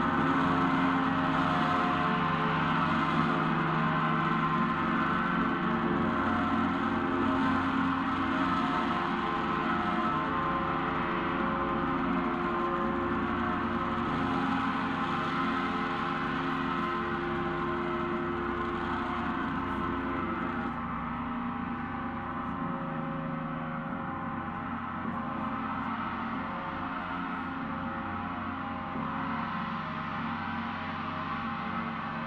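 Large Paiste gong played continuously with a felt mallet, a shimmering wash of many overlapping tones that never breaks and slowly grows quieter.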